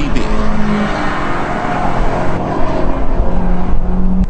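2013 Scion FR-S, with its 2-litre boxer engine, driving at speed: steady engine sound over loud road noise.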